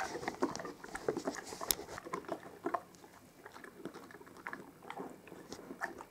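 Alaskan malamute chewing a small dog treat: irregular soft crunches and wet mouth clicks.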